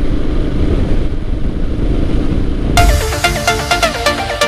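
A Royal Enfield Himalayan's single-cylinder engine and wind noise, steady while cruising on a highway as heard from the rider's camera. About three seconds in, electronic dance music starts suddenly.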